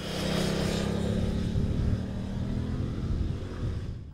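Motorcycle engine running at a steady pitch as the bike rides away, the sound easing off slightly toward the end.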